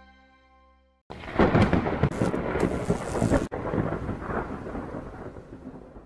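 A music cue fades out, and about a second in a sudden loud crash of noise cuts in. It rumbles and crackles on, breaks off for an instant midway, and slowly dies away: a transition sound effect over the channel's logo card.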